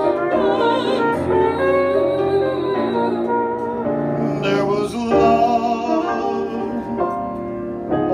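A man and a woman singing a slow jazz ballad as a duet, with piano accompaniment and long held, vibrato notes.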